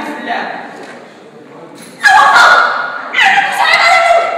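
Speech only: an actor's voice trails off into a short pause, then a loud, raised voice begins about halfway through.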